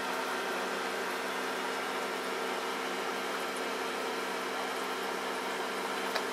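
A steady mechanical hum with several fixed tones over an even hiss, unchanging.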